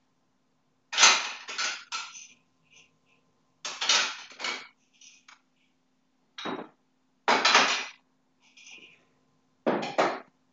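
Irregular clattering and clinking in about six short, sharp bursts, heard through a voice-call microphone.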